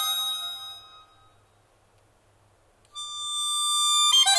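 Accordion playing slow, held chords: one chord fades away within the first second, there is a short near-silent pause, and a new sustained chord comes in about three seconds in and swells louder.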